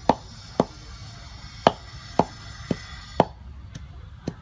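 Pestle pounding green herbs in a mortar: six knocks at an uneven pace, about half a second to a second apart.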